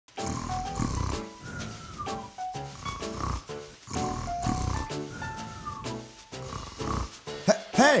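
Light background music with a repeating melody, over which a comic snoring sound recurs as the cartoon grape sleeps. A voice calls out "Hey" at the very end.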